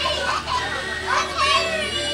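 Children's voices shouting and calling out over one another, high-pitched and lively.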